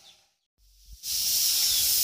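The sound drops to near silence at a cut, then about a second in a steady, high-pitched background hiss comes in.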